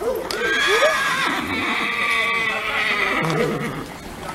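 A horse whinnying: one long call lasting about three seconds that falls slightly in pitch toward the end.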